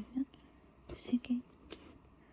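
Punch needle stabbing through fabric stretched taut in an embroidery hoop: a series of short pops, about five in two seconds, each with a brief low thud.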